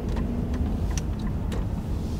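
Cabin sound of an Infiniti Q50 with a turbocharged engine driving slowly in traffic: a steady low engine and road rumble, with a couple of faint clicks about a second in.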